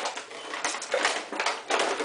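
Plastic rattling and clicking as a clear plastic display case is handled and a chrome car-audio capacitor is lifted out of it, in a few irregular bursts.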